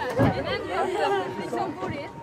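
Unintelligible chatter and calls from people riding a small family roller coaster, with fairly high-pitched voices.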